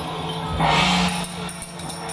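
Temple procession music: steady held tones over drums and clashing percussion, with a louder bright crash about half a second in that lasts about half a second.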